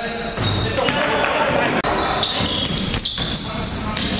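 Basketball bouncing on a hardwood gym floor during play, with players' voices around it.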